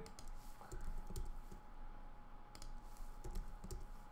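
Computer keyboard being typed on: a few irregular key clicks as a line of code is edited and run.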